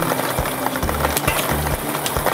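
Lottery balls rattling and clattering in quick, dense clicks as they tumble in a draw machine's mixing chamber, over steady background music.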